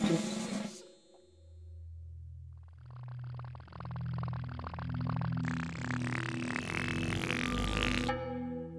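A short xylophone-like music phrase ends within the first second. Then comes a low, didgeridoo-like buzzing drone in stepped low notes, with a hiss building up over it, as the Teletubbies' voice trumpet rises out of the ground.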